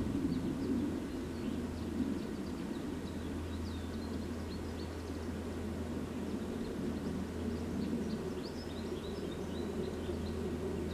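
Small songbirds chirping: short, high calls scattered through, coming thicker near the end. Under them runs a steady low rumble of background noise.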